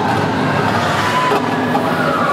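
A crowd of spectators chattering in an ice arena, a steady echoing murmur of many voices.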